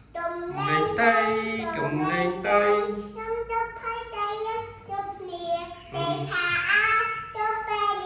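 Young girls singing a song in child voices, the phrases continuous with held and bending notes.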